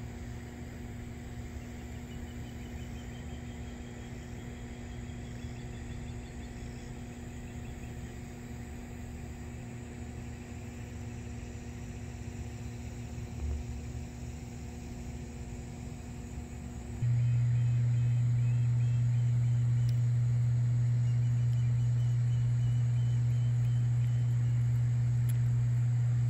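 Steady electrical hum from the high-voltage power transformers in a hydroelectric dam's switchyard: a low drone with a few higher steady tones above it. About two-thirds of the way through it jumps suddenly louder to a single stronger, plainer low hum.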